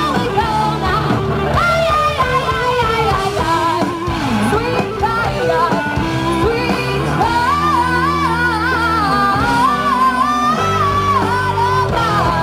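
Live rock band playing a song: a lead singer over two electric guitars, electric bass and drums, the vocal line wavering and sliding in pitch.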